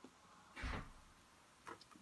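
Paper being pressed down onto a card on a tabletop: a short rustle with a soft bump about half a second in, then a faint click.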